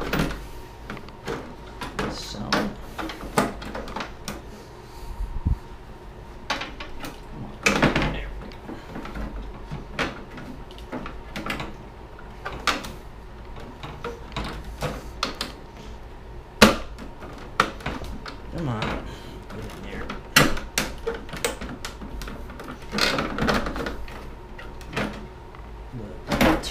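The translucent plastic rear housing of an iMac G3 is slid and pressed onto the computer. It makes irregular clicks, knocks and scrapes of plastic on plastic as it is worked down to line up with its locating pins.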